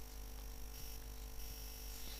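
A quiet pause in speech: only a faint steady hum with hiss from the recording's background.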